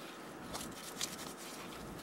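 Faint scratchy rustling of fingers pressing gritty potting mix down around a plant's base in a pot, with a couple of small clicks.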